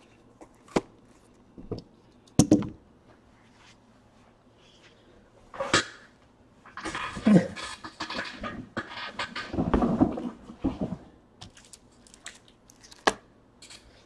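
Trading-card packs being opened and handled on a table: scattered sharp taps and clicks, and a stretch of wrapper crinkling and rustling about seven to eleven seconds in.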